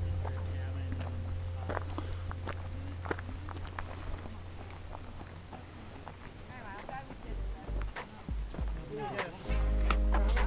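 Voices of people chatting at a distance, with footsteps on gravel and a low steady hum that fades away. A loud low rumble comes in suddenly near the end.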